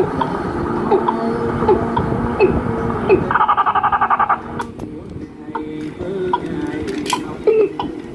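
A cassette tape playing back through a bare cassette deck mechanism: a voice with some music comes from the tape, with sharp clicks from the deck being handled. About three seconds in, a fast even pulsing lasts for about a second.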